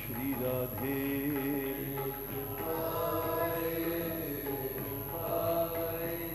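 Devotional kirtan singing, voices holding long wavering notes over a steady low drone.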